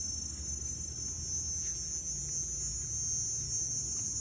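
A steady, high-pitched insect chorus, such as crickets or cicadas, with a low rumble underneath.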